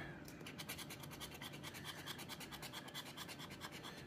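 Metal coin scraping the coating off a scratch-off lottery ticket: faint, quick repeated back-and-forth strokes.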